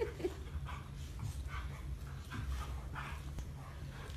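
A large curly-coated dog making a string of faint, short sounds, a few a second, as it noses at a small monkey.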